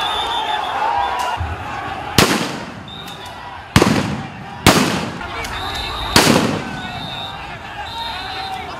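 Four sharp police gunshots, spaced irregularly over about four seconds, each trailing off with an echo, over a crowd shouting.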